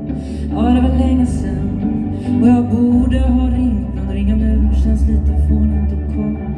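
A woman singing live into a handheld microphone, her voice wavering on held notes, over electric guitar and a steady deep low accompaniment.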